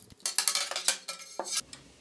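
Small bolt cutters snipping through a steel coat-hanger wire: a series of sharp metallic clicks and snaps over about a second, with a brief ring of the wire.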